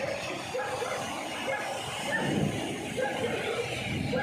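Heavy rain pouring down steadily, with many short pitched calls repeating irregularly over it and a low swell about two seconds in.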